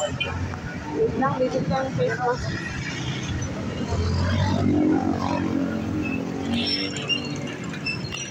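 Busy street sounds: indistinct nearby voices and a motor vehicle's engine, the engine hum loudest about four to six seconds in.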